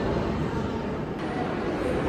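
Steady low rumble of background room noise in a large building, with no distinct events.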